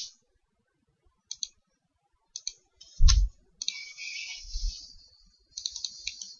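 Computer mouse and keyboard clicks, a few scattered single and double clicks with one louder click and thump in the middle. A soft hiss lasts about two seconds after it.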